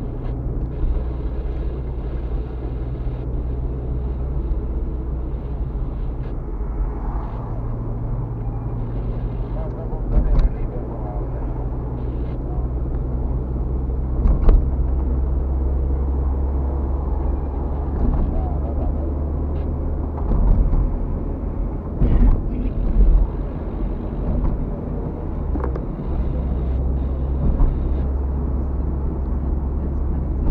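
Car interior while driving: a steady low drone of engine and tyres on the road, heard from inside the cabin. A few short knocks stand out, about ten seconds in, near the middle, and twice more about two-thirds of the way through.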